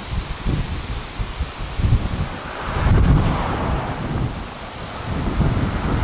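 Gusty wind buffeting the microphone, swelling and easing in gusts, with rustling from the roadside brush.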